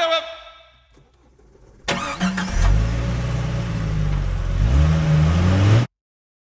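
Car engine starting: a brief burst of starter cranking about two seconds in, then the engine catches and settles into a steady idle. Its revs rise slightly near the end before the sound cuts off abruptly.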